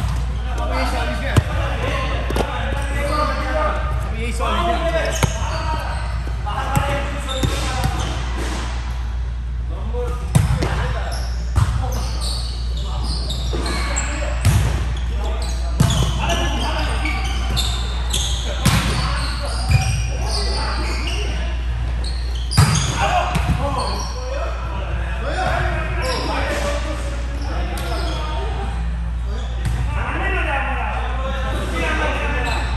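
Volleyball being hit in a rally, with a dozen or so sharp hits spaced a second to a few seconds apart, echoing around a gymnasium.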